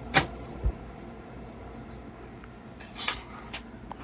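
Handling noises: a sharp click just after the start, a soft low thump, then a brief light clatter about three seconds in as a card of rhinestone clip earrings is set down on a table.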